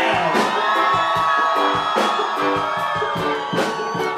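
Live band music with a steady drumbeat and long held notes, the crowd cheering along.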